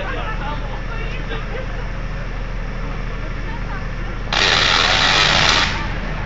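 A Tesla coil fires about four seconds in: a loud, harsh crackling buzz of spark discharge that lasts about a second and a half and cuts off suddenly, over a steady low hum.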